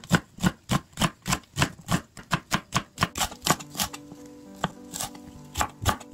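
Chef's knife slicing onion and green onion on a cutting board: steady knife knocks about three a second, with a short pause a little past the middle before the chopping resumes.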